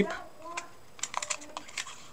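Sticky tape being pulled from a handheld dispenser and torn off to fasten a paper strip, heard as a few light, sharp clicks from about half a second in.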